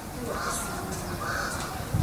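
Crow cawing faintly in the background, two calls about a second apart.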